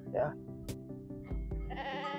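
A Dorper sheep bleats once, starting near the end, over soft background music with steady held notes.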